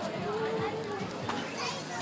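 Indistinct voices of children and adults chattering and calling, with one drawn-out voice held for about half a second early on.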